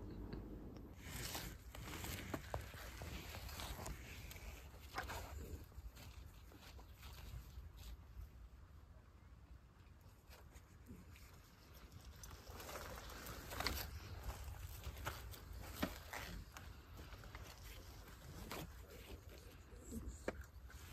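Faint handling noises: scattered clicks and rustles as a trail camera is strapped to a concrete post, over a low steady rumble.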